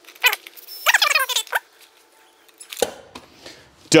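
Cordless drill/driver running a bolt into the plastic transducer cover in two short bursts, the second one longer, its motor pitch rising and falling as the trigger is worked.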